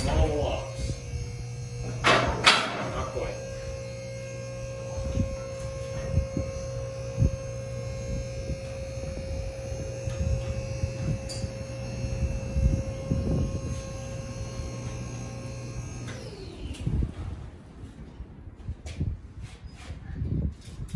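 The electric motor and hydraulic pump of a four-post car lift's power unit run steadily, raising the empty runways. There is a clunk about two seconds in and light clicks along the way. The motor shuts off about sixteen seconds in and winds down with a falling pitch.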